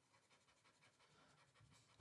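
Near silence, with only the faint scratching of a stylus scribbling across a tablet screen.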